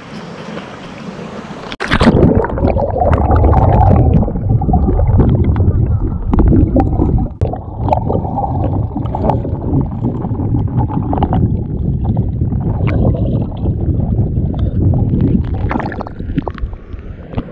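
River water heard at the surface, then about two seconds in a sudden plunge underwater: a loud, muffled low rumble and gurgle of moving water and bubbles against the camera, with scattered small knocks and splashes from children swimming close by.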